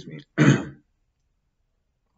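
A man clears his throat once, harshly and briefly, about half a second in.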